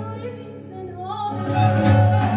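Live Persian classical music: a woman's voice sings a held line that glides upward, over oud accompaniment. Plucked oud notes come in louder near the end.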